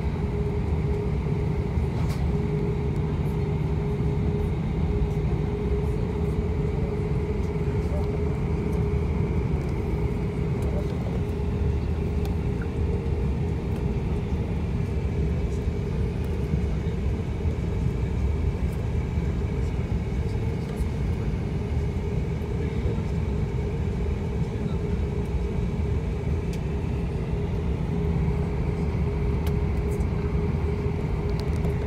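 Cabin noise of an Airbus A340-500 taxiing, heard inside the cabin over the wing: a steady low rumble with a constant hum from its four Rolls-Royce Trent 500 engines at low taxi thrust.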